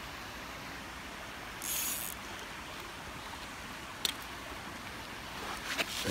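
A small mountain stream running steadily, with a brief hiss about two seconds in and a single sharp click about four seconds in.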